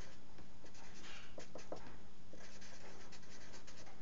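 A felt-tip pen writing words on paper: a quick run of short strokes of the pen tip on the sheet, over a faint steady hum.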